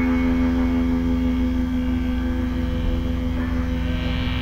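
Electric guitar chord through effects left ringing as a steady drone over a low hum, its higher notes slowly fading, in a quiet stretch of a live rock band's set.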